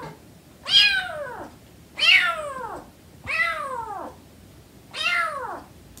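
Siamese kitten meowing four times, about a second and a quarter apart, each call falling in pitch.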